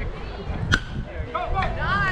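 A baseball bat cracks once against a pitched ball, a single sharp hit with a brief ring, less than a second in. Spectators shout and cheer right after.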